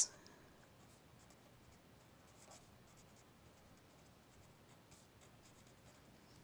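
Faint scratching of a felt-tip marker writing on paper, in short scattered strokes.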